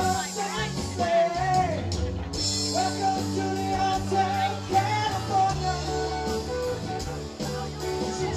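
Live rock band playing: electric and acoustic guitars, bass and drums, with a sung lead vocal over them.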